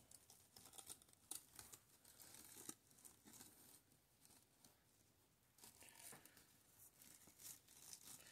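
Faint, irregular crinkling and rustling of plastic deco mesh being handled, with a near-silent pause about halfway through.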